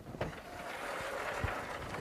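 Faint room noise with a couple of soft knocks, one about a fifth of a second in and one about a second and a half in.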